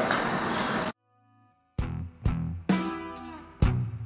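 Steady kitchen background noise cuts off about a second in; after a short silence, background music of strummed guitar chords begins, each chord struck sharply.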